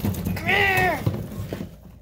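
A guinea pig gives one short squeal, about half a second long, that rises and then falls in pitch, over the rustling of hay and pellet bedding being stirred.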